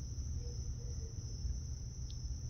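Quiet barn background: a steady, unbroken high-pitched whine over a low rumble.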